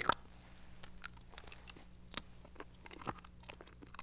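People chewing firm, chewy fruit-candy strips: faint, irregular mouth clicks and smacks over a low steady hum.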